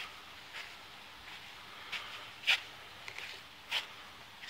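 Handling noise from a phone microphone rubbing against clothing: a few short scratchy rustles over a faint steady background, the loudest about two and a half seconds in and another near the end.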